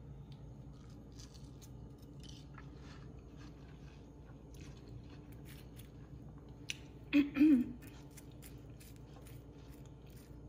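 A person chewing bites of juicy watermelon, with faint, scattered wet mouth clicks. A brief voiced sound from the eater comes about seven seconds in, over a steady low room hum.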